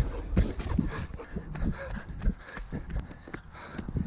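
A runner's and a dog's footfalls on a dirt forest trail, an uneven run of thuds, with breathing and the body-worn camera jostling.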